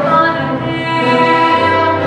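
Live stage-musical music: a woman singing long held notes over orchestral accompaniment with strings.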